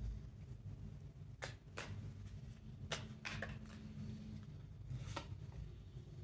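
Tarot cards being handled: about half a dozen short, faint snaps and slides as cards are pulled from the deck and one is laid down on the cloth. A faint steady low hum runs underneath and stops about two-thirds of the way through.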